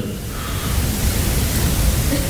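A lecture audience reacting: a dense, even wash of crowd noise that interrupts the talk.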